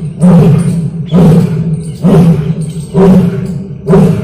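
Asiatic lion roaring in a series of short, low grunts, about one a second, each fading before the next.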